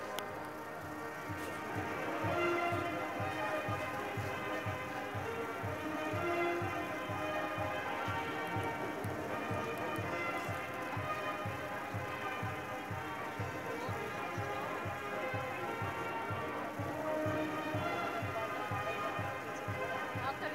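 A brass band playing a march over a steady, evenly spaced bass-drum beat.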